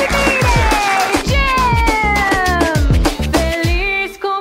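Background music with a steady bass-drum beat under long, downward-gliding melodic lines; the beat drops out near the end.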